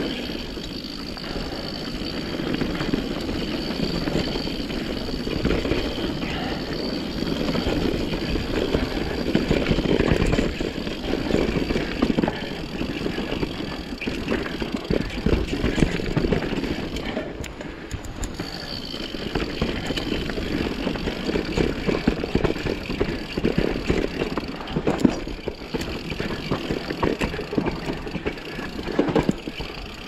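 Mountain bike being ridden down a dirt singletrack: a steady rumble of knobby tyres over dirt and roots, broken by many small knocks and rattles from the bike's chain and frame over rough ground.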